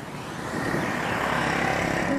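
Motorbike passing along a street: engine and road noise that grows louder over the two seconds.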